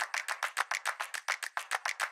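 A rapid, even run of sharp clicks, about seven a second, like a rattle or shaker, used as a sound effect.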